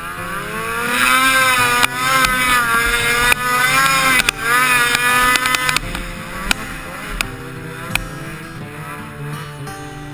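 Snowmobile engine revving hard under load, its pitch rising and wavering for about five seconds before easing off; a few sharp knocks follow.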